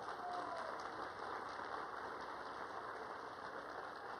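Audience applauding, a steady, fairly faint patter of clapping.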